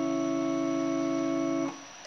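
Yamaha electronic keyboard holding a chord, the Dó that closes the phrase, at a steady level without fading. It is released abruptly about three-quarters of the way through.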